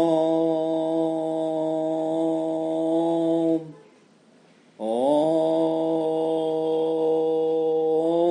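A voice chanting a long, held "Om" at one steady pitch, twice. The first note fades out about three and a half seconds in, and the second begins a second later.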